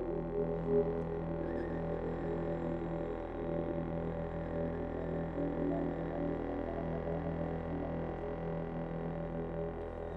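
Slow droning contemporary chamber music with electronics: low held tones that sustain and shift little, with no beat.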